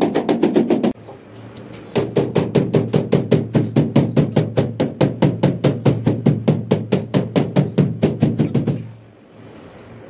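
Rubber mallet tapping a large ceramic wall tile in quick, even strokes, several a second, bedding it into the mortar behind it. The tapping breaks off briefly about a second in, then runs again until near the end.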